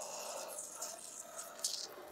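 Faint handling sounds of a metal ruler being pressed against the edge of a washi-taped file-folder cover on a cutting mat, with one short scratchy hiss about a second and a half in.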